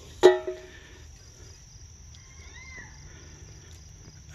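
A single sharp click with a brief ringing tone about a quarter second in, over a faint, steady, high insect trill in the field.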